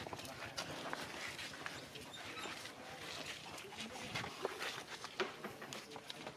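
Macaques calling with many short squeaks, over a patter of small scuffling clicks.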